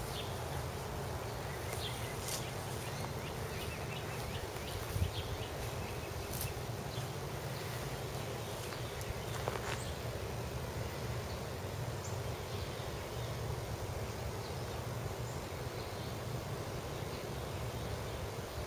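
Steady low buzzing hum with a few faint clicks and ticks.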